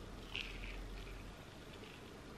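Faint, soft chewing of a buttered crumpet thin, with a small mouth click about half a second in.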